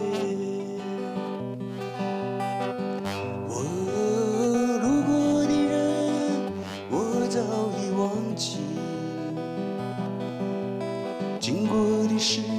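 A man singing a song while playing a steel-string acoustic guitar, his sung phrases coming in over sustained guitar chords and low notes.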